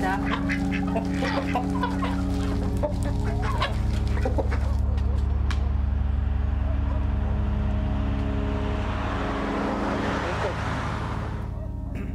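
Chickens and other farmyard fowl clucking for the first few seconds, then a steady low drone, with a hiss that swells and cuts off near the end.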